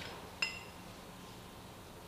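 A single light metallic clink with a brief ringing decay about half a second in, from the parts of a disassembled CVT primary clutch touching as they are handled. After it, only faint room tone with a low steady hum.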